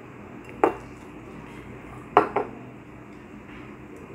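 Glass and metal parts of a siphon coffee maker clinking as its glass bowl of coffee is handled: one sharp clink about half a second in, then two quick ones just after two seconds.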